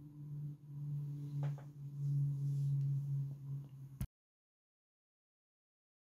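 A steady low hum that swells and fades slightly, with a few faint pencil strokes on paper about one and a half seconds in; the sound cuts off abruptly about four seconds in, leaving digital silence.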